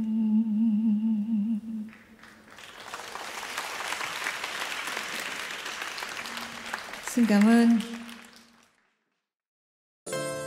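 A woman's voice holds the final note of a song with a wavering vibrato for about two seconds. Audience applause follows for several seconds. A short, loud spoken phrase over the microphone comes near the end, before the sound cuts to silence.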